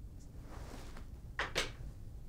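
Felt-tip marker drawing a check mark on a whiteboard: two short, quick scratching strokes about one and a half seconds in, after a fainter stroke near the start.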